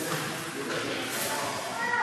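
Raised human voices calling out, pitched and wordless.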